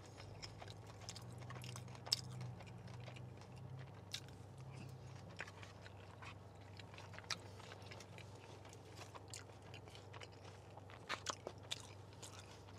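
A person chewing a mouthful of grilled steak, a little tough, with faint wet mouth clicks scattered through and a few sharper clicks near the end, over a low steady hum.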